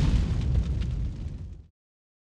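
Deep, explosion-like sound effect of a fiery logo animation, dying away and then cutting off abruptly just before the end, leaving dead silence.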